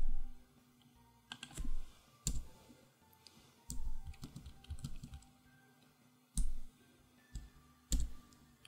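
Typing on a computer keyboard: scattered keystrokes in short runs with quiet gaps between them.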